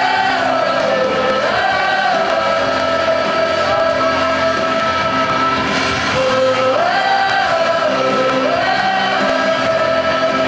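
Two girls singing a song into one shared microphone over musical accompaniment, holding long notes that swell up and fall back several times.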